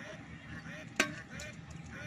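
An animal's short rising-and-falling call, repeated about twice a second. A single sharp click or knock about halfway through is the loudest sound.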